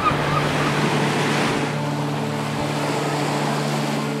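Small ocean waves breaking and washing up on a sandy beach, a steady rushing hiss, with a low steady hum underneath.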